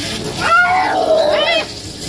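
Domestic cat yowling in protest at being bathed: one drawn-out meow starting about half a second in and lasting just over a second, ending in a rising-and-falling wail.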